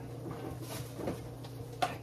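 Gloved hand mixing seasoned ground beef in a stainless steel bowl, faint soft sounds over a steady low hum, with a short exclamation near the end.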